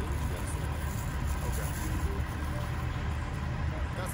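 Steady low rumble of outdoor street noise, with no clear single event standing out.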